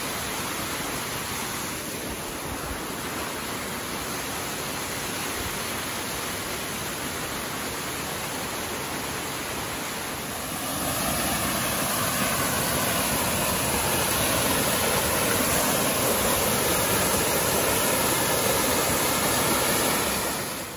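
A small waterfall pouring over rock in two streams: a steady rush of falling water that grows louder about ten seconds in.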